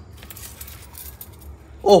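Faint, scattered metallic clinking and rustle from handling tweezers and a thin metal strip that a handheld battery spot welder has just welded together. A brief exclamation comes near the end.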